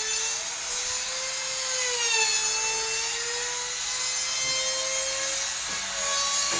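An electric power tool's motor running with a steady whine that sags and recovers slowly in pitch, over a hiss, in the manner of a motor under a changing load.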